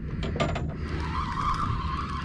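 A spinning reel whirring in a steady high tone that starts about halfway through, while a hooked flounder is played on the rod, over a low steady rumble.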